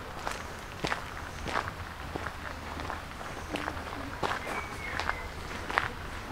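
Footsteps on a fine gravel path at a steady walking pace, each step a short crunch.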